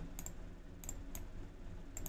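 A few faint, scattered clicks from a computer's input devices, over a low steady hum.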